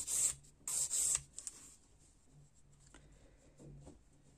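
Hand nail file rasping across a long artificial stiletto nail in two short strokes within the first second or so.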